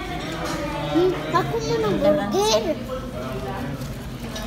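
Background voices of a dining-room crowd, including children, with a child's high voice rising and falling in short calls from about one to three seconds in.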